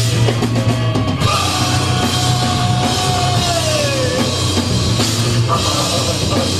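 Rock band playing live with a full drum kit, bass and guitars. A high lead note is held for a few seconds, then bends down about four seconds in.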